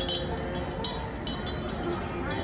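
Metal chain on an elephant clinking as the animal moves, a few sharp separate clinks with a brief metallic ring.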